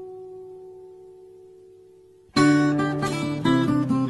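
Acoustic guitar music: a held chord rings out and fades over about two seconds, then busier plucked guitar playing cuts in suddenly, louder.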